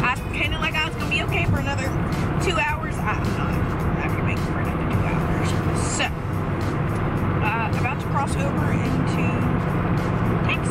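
Steady road noise and engine hum inside a moving Toyota Camry's cabin, with music playing and a woman singing along over it.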